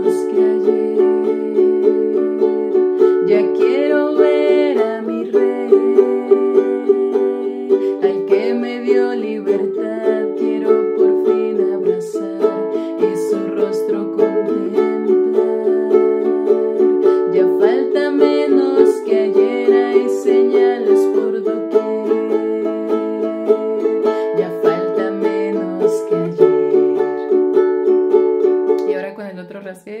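Ukulele strummed in chords with an up-and-down strumming pattern, the chord changing every few seconds.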